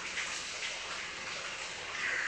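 Countertop electric oven running while it bakes bread rolls: a steady, even hiss.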